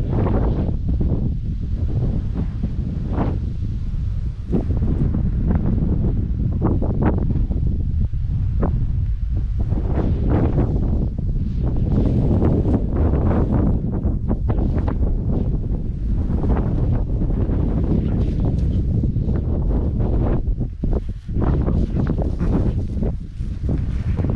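Strong wind buffeting the microphone: a steady, loud, gusty rumble that dips briefly about three-quarters of the way through.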